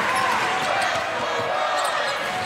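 Basketball being dribbled on a hardwood court over a steady arena background.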